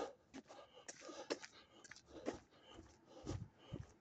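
Faint footsteps on a sidewalk edged with snow and ice, short soft crunches about two a second.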